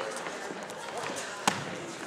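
Indistinct voices chattering in a gym, with one sharp thud about one and a half seconds in and a few fainter knocks.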